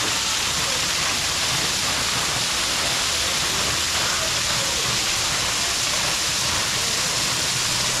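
Artificial rock waterfall, water falling in thin streams and splashing steadily into the pool beneath it.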